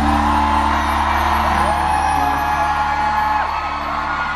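Live band music holding a sustained closing chord on keyboard and bass, with a high voice holding a long, bending note above it that stops about three and a half seconds in.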